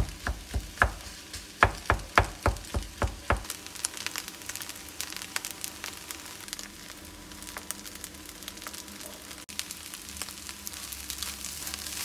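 Egg and Spam fried rice frying in a nonstick pan, stirred with a wooden spatula. For about the first three and a half seconds the spatula knocks against the pan about three times a second as it breaks up the freshly added cooked rice; after that a steady sizzle with light crackling.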